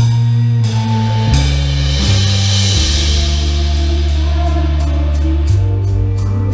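A band plays a song intro at rehearsal volume. An electric bass holds long low notes that step to a new pitch every second or so, under cymbal swells. The drum kit comes in with a steady beat in the second half.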